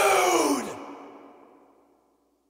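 Isolated thrash-metal backing vocal shout, its pitch falling as it breaks off just under a second in, then dying away in a reverb tail.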